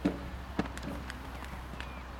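Hoofbeats of a horse cantering over a sand arena: a heavy thud right at the start as it lands from a jump, another about half a second in, then lighter hoof strikes.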